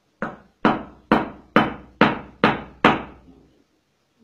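A goldsmith's hand hammer striking metal on a small anvil block: seven even blows, a little more than two a second, each ringing out briefly.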